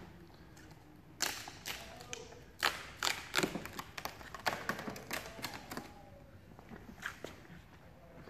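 Hands working at a car's door trim and rubber window seal, making a scattered series of light taps and knocks, about a dozen across the few seconds, with no steady rhythm.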